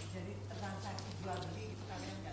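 A person speaking indistinctly over a steady low hum.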